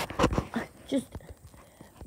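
Short breathy puffs and mouth noises from a person close to the microphone, with one brief spoken word about a second in.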